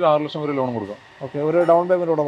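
Speech only: a person talking, with a brief pause near the middle; no other sound stands out.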